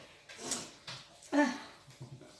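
A person's brief hesitant "uh", a short sound with a falling pitch, preceded by a short breathy sound.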